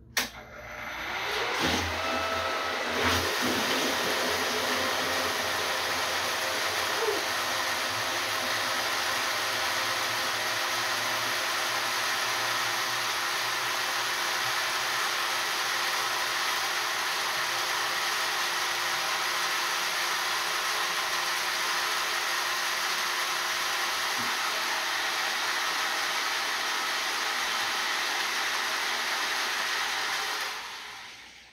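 Three-phase centrifugal pump cart, run from a variable frequency drive, switched on and ramping up to top speed with a rising whine over the first couple of seconds. After that comes a steady, loud rush of the pump and water pouring at full flow from a hose into a plastic tank. It dies away near the end as the pump is stopped.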